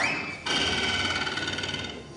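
A steady, high, rapidly trilling ringing tone, rather like a telephone bell. It starts about half a second in, right after a quick rising glide, and fades toward the end.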